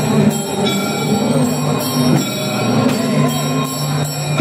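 Temple procession music: wind instruments holding long, steady droning notes over the noise of a crowd.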